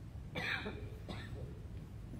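A person coughing twice, a longer cough and then a shorter one about half a second later.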